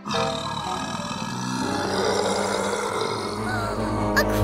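A big cat roaring as a cartoon sound effect: one long roar that starts suddenly and holds for about four seconds, with music underneath.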